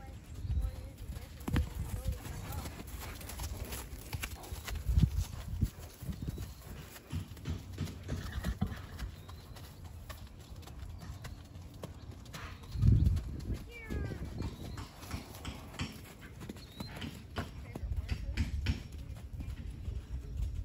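Hoofbeats of a mare and her foal trotting and cantering over grass and dirt: irregular dull thuds, the loudest about thirteen seconds in.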